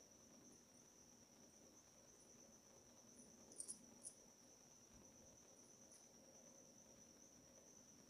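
Near silence: room tone with a faint, steady high-pitched whine and a couple of very faint clicks about three and a half seconds in.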